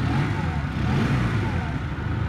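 Honda CM125 motorcycle's air-cooled parallel-twin engine idling steadily.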